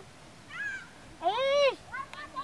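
A high-pitched voice calls out twice: a short call, then a louder, longer one that rises and falls in pitch.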